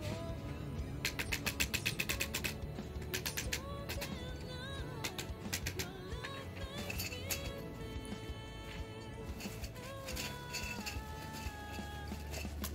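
Background music with a wavering melody, over which a quick run of sharp taps sounds about a second in, with a few more scattered taps later: a hammer tapping the joints of a metal pipe shoe-rack frame to seat them firmly.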